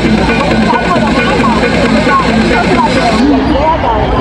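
Several people chattering loudly over music played through a small portable amplifier speaker.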